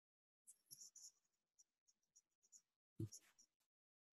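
Near silence on a video-call line, with a few faint scattered clicks and rustles and a brief soft sound about three seconds in.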